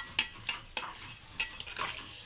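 Metal ladle stirring a boiling vegetable curry in a steel kadhai, with a few scrapes and clinks against the pan.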